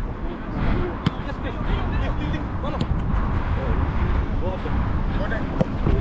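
Steady rumbling wind and movement noise on a body-worn action camera's microphone during an outdoor football match, with faint shouts from distant players and a single sharp knock about a second in.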